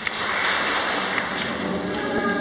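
Audience applause in a large hall: a dense patter of many hands clapping that starts right at the beginning.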